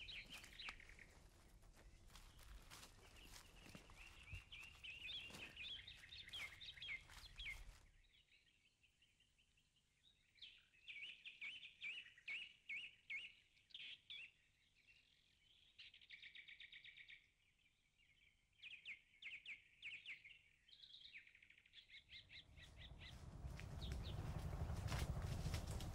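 Faint birdsong: small birds chirping in quick runs of short repeated calls. A low background noise under them stops about a third of the way through.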